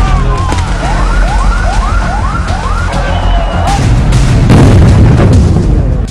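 A siren whooping in about five quick rising sweeps, then a loud low rumble with a few bangs over the last two seconds.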